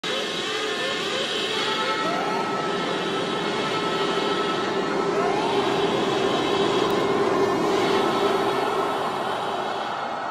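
Intro sound effect for an animated logo: a dense, noisy swell with a steady held tone and a few short rising glides, fading near the end.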